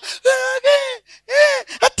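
A man's voice through a handheld microphone, pitched high in three short, drawn-out exclamations without clear words.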